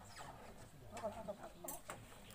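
Faint voices in the background, wavering in pitch, with two sharp knocks near the end.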